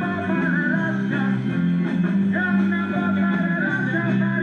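A live rock and roll band playing, with guitars over a steady bass line.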